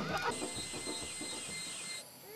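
Quiet tropical rainforest ambience: a steady high-pitched drone sets in shortly after the start, with faint bird calls over a low background hush.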